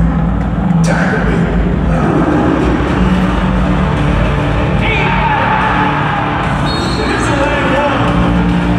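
Pregame introduction music played loud over an arena's public-address system, with long held low notes.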